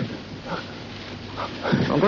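A man's short, strained gasps and whimpers as he struggles, sinking, then near the end his voice rising into a shout for help.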